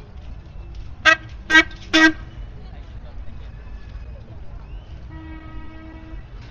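A horn, most likely a motorbike's, gives three short toots about half a second apart, followed near the end by one quieter, longer steady honk, over the low hubbub of a crowded street.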